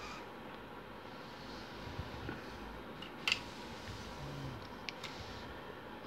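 A few small clicks and light knocks from a semi-automatic bug telegraph key being handled and turned around on its mat, over a quiet room background, with one sharper click about three seconds in.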